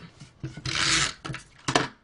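Stampin' Up! Snail tape-runner adhesive rolled along a strip of cardstock: a rasping run of about half a second, followed by a few light clicks.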